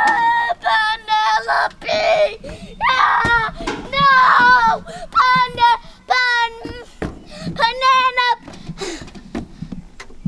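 A child's high voice wailing in a string of drawn-out, sing-song cries with short breaks between them, a mock lament.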